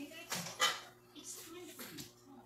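Metal sheet pan being lifted off the counter: two short scrapes, the second the louder, then lighter rubs, over faint TV voices.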